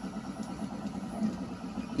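Cooling fans of a 3D printer running with a steady low hum.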